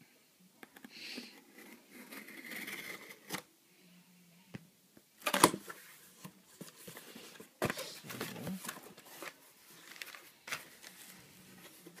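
A hobby knife scratching through the packing tape along a cardboard box's seam, then the flaps torn open with a loud, sudden crackle about five seconds in and another near eight seconds. Crumpled packing paper inside rustles near the end.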